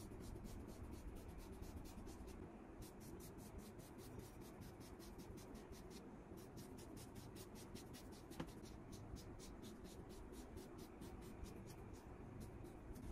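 Small facial razor scraping across skin in short, quick strokes, several a second, shaving off fine facial hair. The sound is faint, with a short pause about two seconds in.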